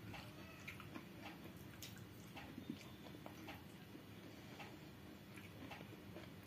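Faint, scattered small wet clicks and smacks, a few a second: fingers mixing and squeezing water-soaked rice (pakhala) in a glass bowl of water.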